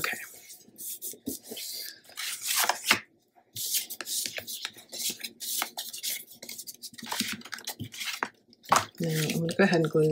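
Paper and chipboard pieces being handled, slid and pressed down on a cutting mat: a run of short, crisp rustles and scrapes.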